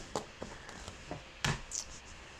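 A few light taps and clicks from a hand handling a clear stamp on a plastic stamping platform. The sharpest click comes about one and a half seconds in, followed by a brief soft rustle.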